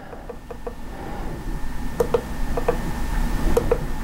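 Push-buttons on a ProtoThrottle handheld model-railroad throttle clicking, mostly in quick pairs, several times over, as the locomotive address digits are stepped, over a low background rumble.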